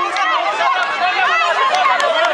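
Many children's voices shouting and cheering at once, high-pitched and overlapping, while a tug-of-war is under way.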